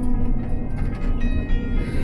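A woman singing into a handheld microphone over the bus's PA, holding a note that ends about a third of a second in, over the steady low rumble of the moving coach.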